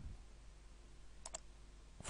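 Computer mouse button clicked twice in quick succession, two short sharp clicks about a tenth of a second apart, heard about a second and a quarter in. This is the click that opens a software dialog.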